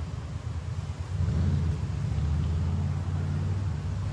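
Low rumble of a fan's air blowing across the microphone, a rough, fluttering sound that grows louder about a second in.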